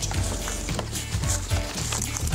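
Background music with a steady bass line, under faint rustling and knocking of goods being packed into a fabric shopping trolley.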